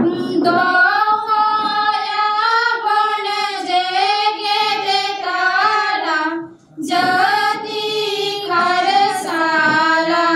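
A group of young women singing a song together in unison into a microphone, with a brief pause for breath about six and a half seconds in.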